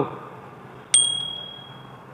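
A single bright bell-like ding about a second in, its clear high tone ringing on and slowly fading: a notification-bell sound effect added in editing.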